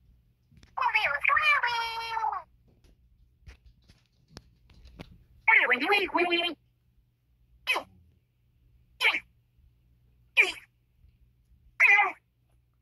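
High-pitched, squeaky wordless voice sounds, like a character's voice: a longer call about a second in, another near the middle, then four short chirps at even spacing.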